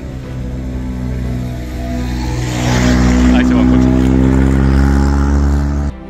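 A road vehicle on a wet road, its engine and tyre hiss growing louder from about two and a half seconds in and holding until it cuts off suddenly near the end.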